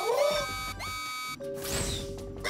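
Cartoon soundtrack music with synthesized notes that each swoop up into a held tone. About one and a half seconds in it breaks off into a whooshing sweep over a steady electronic hum.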